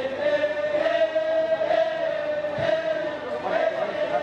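Voices chanting one long, wavering held note, with a murmur of speech behind it.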